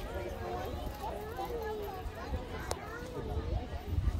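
Indistinct voices of adults and children talking among a crowd, with a low rumble on the microphone and a single sharp click a little under three seconds in.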